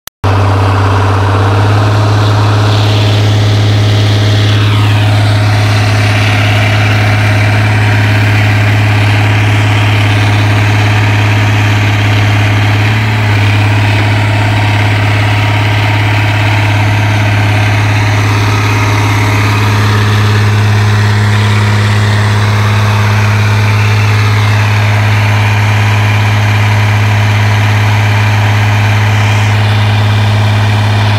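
Excavator's diesel engine running steadily at idle, a loud, constant low drone.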